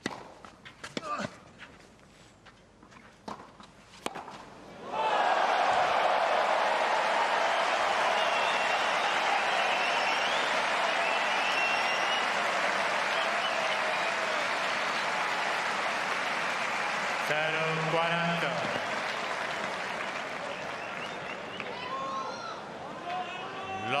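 A few sharp tennis racket-on-ball strikes in a rally, the last a 160 km/h forehand winner. About five seconds in, a large crowd breaks into loud applause and cheering that carries on and slowly fades.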